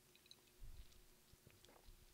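Faint mouth sounds of a man sipping a drink from a glass and swallowing close to a microphone, with a few small clicks and soft low thumps.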